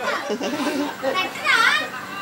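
Young children's voices and chatter, with one child's high-pitched call about one and a half seconds in.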